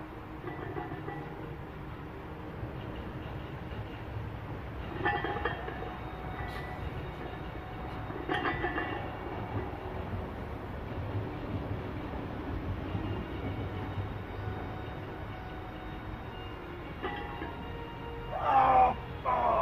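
A steady low rumble, with short, effortful vocal sounds from a man squatting a heavy barbell: one about five seconds in, one about eight and a half seconds in, and one near the end.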